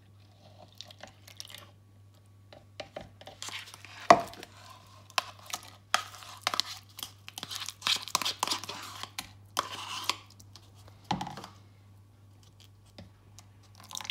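A metal spoon scraping mashed banana out of a small plastic pot into a plastic measuring jug of milk, in a run of short scrapes and clicks. The loudest is a sharp knock about four seconds in.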